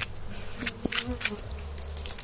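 Honey bees buzzing around a freshly cut wild honeycomb held close, with a few short scratchy noises and one sharp click about a second in.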